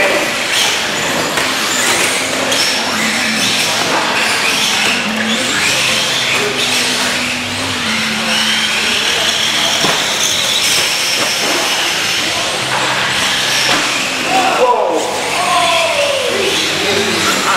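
Radio-controlled off-road cars racing on a dirt track, their motors whining in a high pitch that rises and falls with throttle, over the chatter of voices in a large hall.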